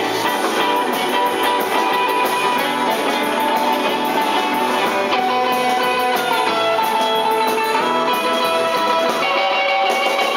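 Live rock and roll band playing an instrumental passage: electric guitars playing held, stepping notes over drums, with steady cymbal strokes.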